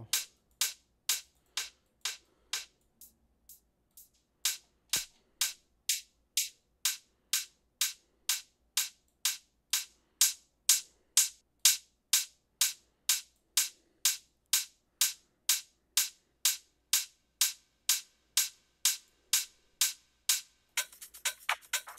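Electronic hi-hat sample looping on its own in a steady pattern of about two hits a second while it is being equalised. From about seven seconds in, its lower end is cut away by a high-pass EQ, and from about ten seconds the hits are louder.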